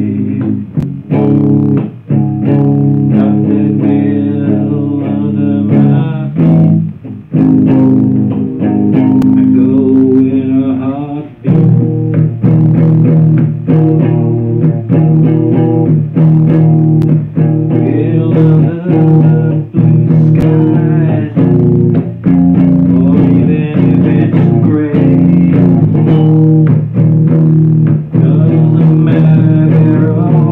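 Electric guitar played live, strumming a repeating rock chord progression of B, F#, A and E, with the chords ringing between strokes.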